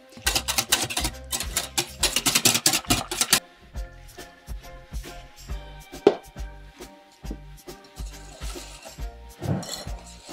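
Wire whisk beating a thick egg and crème fraîche mixture in a glass bowl: a quick run of rattling strokes for about the first three seconds, then softer whisking near the end. Background music with a steady beat plays throughout.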